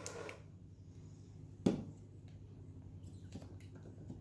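Quiet handling of a plastic portable blender cup, with one sharp knock a little before halfway and a few faint clicks later, over a low steady room hum.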